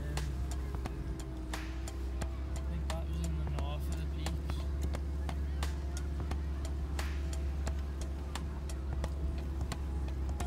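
Inside a 4x4's cab on a slow drive over a rocky, potholed track: a steady low engine and cabin drone, with frequent sharp knocks and rattles from the vehicle jolting over stones. Faint voice or music sounds lie underneath.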